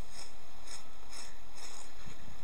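A piece of wooden roof batten scraping along a lime mortar joint between stones in short repeated strokes, about four in two seconds, as the soft mortar is pressed back into the joint.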